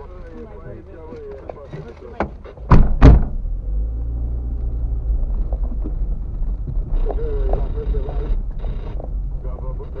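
Car bumping along a rutted gravel road, heard from inside the cabin: two loud thumps a little under three seconds in as it jolts over a bump, then a steady low rumble of tyres on gravel.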